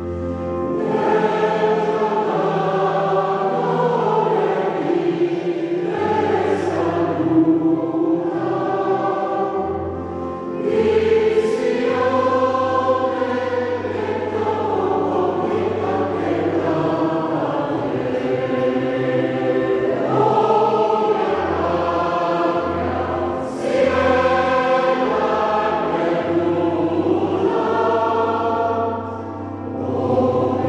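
Mixed choir of men's and women's voices singing together in a church, with short breaks between phrases.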